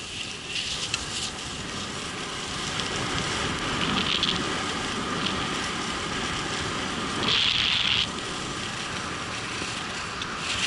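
Skis sliding and scraping over packed snow, with wind rushing over a helmet-mounted camera. The hiss of the skis grows louder about four seconds in and again for about a second near eight seconds.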